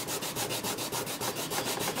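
Acetone-soaked tissue rubbed rapidly back and forth over a freshly etched copper circuit board, scrubbing off its photo coating: a fast, even rhythm of scrubbing strokes.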